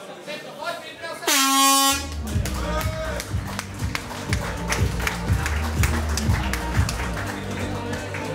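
An air horn sounds once, a single steady blast of about half a second, signalling the end of a boxing round. Music with a steady thumping beat then starts up.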